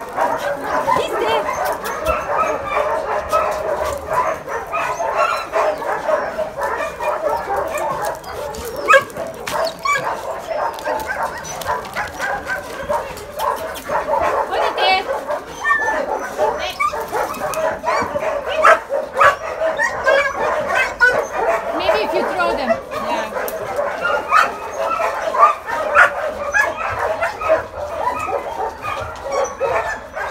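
Several dogs barking, yipping and whining together without a break, the calls overlapping one another.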